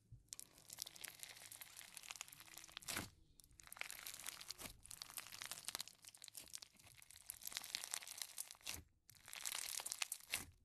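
Foam-bead slime (floam) crackling and crunching as hands squeeze and pull it apart, the tiny foam balls popping against each other in a dense stream of fine clicks. The sound pauses briefly about three seconds in and again shortly before the end.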